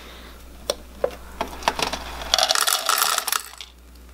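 WOPET automatic pet feeder dispensing dry kibble into its stainless steel bowl on manual release. A few separate pieces click into the metal bowl, then about a second of dense rattling as the rest pours in.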